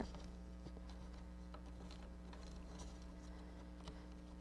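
Faint rustling and light ticks of flat reed being woven in and out around oak basket hoops, over a steady low hum.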